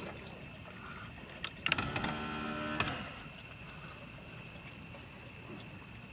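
A boat's electric trolling motor, holding position on GPS anchor, runs briefly: a steady pitched hum of about a second starting about two seconds in, just after a couple of clicks. Steady high insect chirring carries on underneath.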